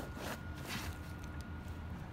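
Faint rustling and crackling as a fabric grow bag is peeled away from a dense root ball, with the fine root tips pulling out of the fabric.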